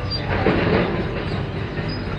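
Steady rumble and rattle of a moving vehicle ride, swelling louder about half a second in.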